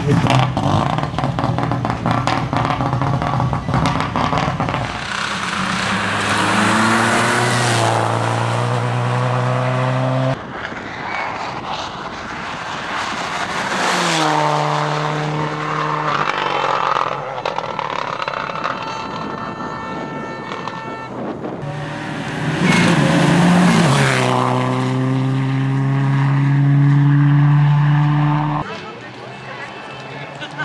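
Subaru Impreza rally car's turbocharged flat-four engine revving hard, its pitch climbing again and again as it pulls through the gears. The sound breaks off abruptly a few times. The first few seconds are a rougher, rattling run at lower revs.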